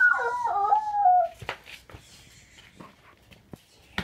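A young child's high voice howling in a wavering, rising and falling pitch, like a dog's howl, for about a second and a half, then a few faint clicks.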